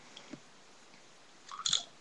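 A short sip drunk from a soda bottle near the end, after a few faint handling noises.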